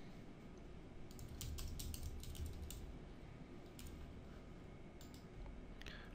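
Faint typing on a computer keyboard: a quick run of keystrokes about one to three seconds in, then a few single key presses.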